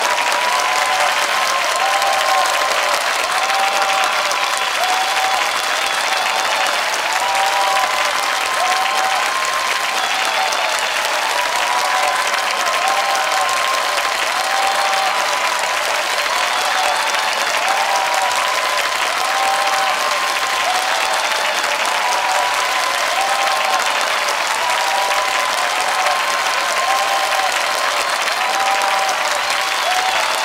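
Steady, dense applause that holds at one level throughout, with a faint warbling tune under it that repeats about every one and a half seconds.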